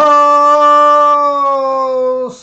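A man singing a capstan shanty unaccompanied, holding one long, steady note at the end of a line, which sags slightly in pitch near the end.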